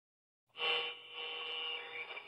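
An intro sound effect: a steady hum of several held tones that starts about half a second in.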